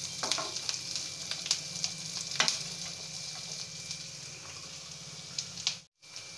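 Sliced onion, garlic, ginger, cashew pieces and whole dried red chillies sizzling steadily in hot oil in a non-stick frying pan. They are being fried until they just change colour. A spoon scrapes and taps against the pan as they are stirred, mostly in the first half, and the sound cuts off suddenly just before the end.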